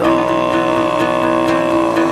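Music: Altai kai throat singing, holding one low, growling drone with a strong steady overtone ringing above it, over instrumental backing.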